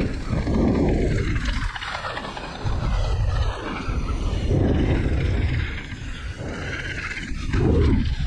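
Wind rushing over the microphone of a camera on a mountain bike riding fast down a packed-dirt trail, with the knobby tyres rolling on the dirt. It comes in low rushing surges a second or so long, easing between them.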